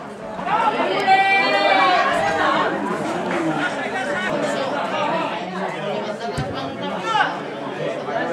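Several people's voices talking and calling out over one another, with one voice raised loudly about a second in.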